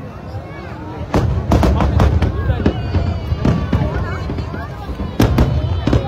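Aerial fireworks bursting in a rapid run of sharp bangs from about a second in, easing off, then two loud bangs close together near the end, over a low continuous rumble. Crowd voices chatter underneath.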